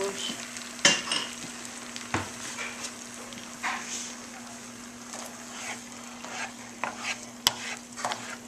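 Beaten eggs with shredded cheese sizzling in a nonstick frying pan as they are stirred. The utensil scrapes and knocks against the pan several times over the steady sizzle.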